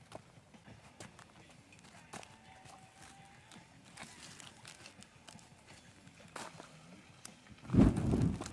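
Faint clicks and scuffs of footsteps and handling on rock, then near the end a sudden loud, low whoosh as two-stroke gasoline poured over the kindling ignites and flares up.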